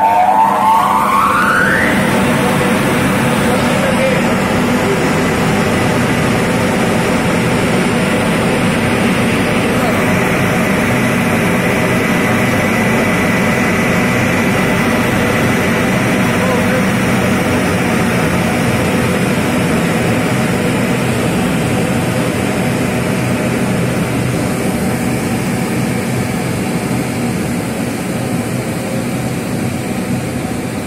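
Electric motor driving a multistage centrifugal water pump: its whine rises quickly as it runs up to speed over the first two seconds, then it runs steadily with a constant high tone over a loud hum.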